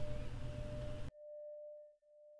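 A steady, high, pure ringing tone from the soundtrack's ambient drone, with a faint hiss under it that cuts off suddenly about halfway; the tone then rings on alone, quieter, and starts to fade near the end.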